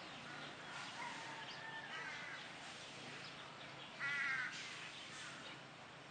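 Crows calling faintly in open air, with one louder, harsher caw about four seconds in.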